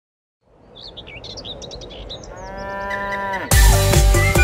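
Sound-effect intro: birds chirping over a rising hiss, then one long cow moo that drops in pitch at its end. About three and a half seconds in, loud electronic dance-pop music with a heavy beat cuts in.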